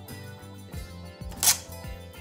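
Soft background music, with one short, sharp tear about one and a half seconds in as a paper label is torn off against the label printer's tear bar.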